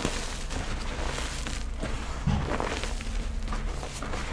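Hands squeezing and crumbling soft pink gym chalk reform powder: an irregular run of soft crunching and crackling as the powder breaks and falls through the fingers, with one dull thump a little over two seconds in.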